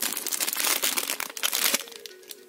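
Foil blind-bag packet crinkling as hands squeeze and pull it open, going quieter near the end.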